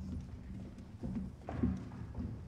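Footsteps of several children walking and shuffling across a stage floor: irregular low thumps, the loudest cluster about one and a half seconds in, over a steady low hum.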